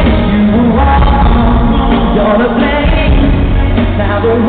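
Live pop song: a male lead singer with the band behind him, loud and dull-toned, picked up from within an arena crowd.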